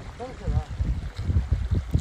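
Wind buffeting the microphone as a low, uneven rumble, with a brief snatch of a man's voice about half a second in.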